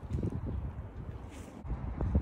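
Wind buffeting the phone's microphone: a gusty low rumble that rises and falls.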